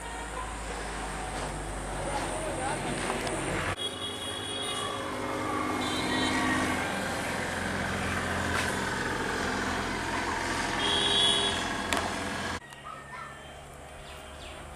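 Background voices and traffic-like street noise. The sound changes abruptly about four seconds in and again a little before the end.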